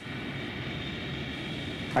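Jet airliner engines: a steady rush of noise with a faint high whine in it.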